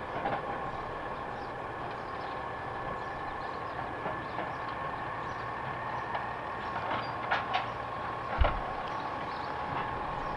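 Distant Peterbilt 320 garbage truck with a DaDee Scorpion automated side loader running, a steady rumble with a steady high whine over it, a few faint clicks and a thump near the end.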